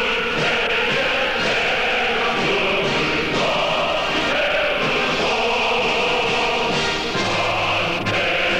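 A choir singing a North Korean patriotic song in Korean over instrumental accompaniment, in one continuous phrase.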